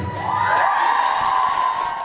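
Audience cheering, with several high whoops and screams rising and falling together, just after the dance music stops.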